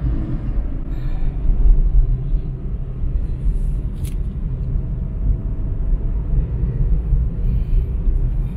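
Steady low rumble of a car driving at road speed, heard from inside the cabin: tyre and engine noise.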